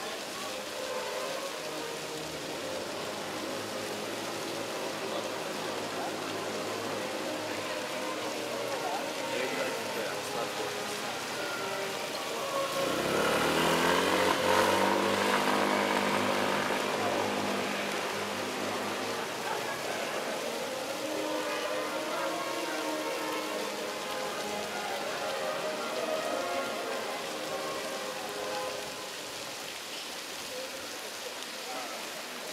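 Steady splashing of a stone fountain mixed with the talk of people nearby. About halfway through, a vehicle passes close by, its engine rising and then fading.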